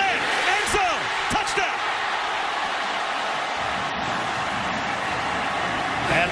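Stadium crowd cheering, a steady roar of many voices, with individual shouts and a few sharp knocks in the first second or so.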